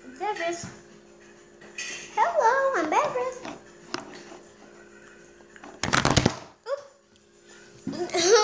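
A young child's wordless sing-song vocalizing, the pitch sliding up and down. About six seconds in comes a loud, brief crackling clatter, with a faint steady hum underneath.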